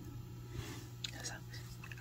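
Quiet, faint clicks of small steel jewelry pliers and a fine metal chain being handled, a few scattered ticks around the middle, over a steady low hum.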